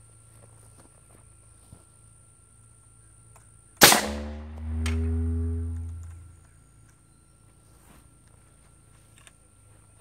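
A PVC air cannon with a 70-cubic-inch chamber and a manual sprinkler valve fires a golf ball at 290 PSI. There is one loud, sharp shot about four seconds in. It is followed by a low tone that falls in pitch and fades out over about two and a half seconds.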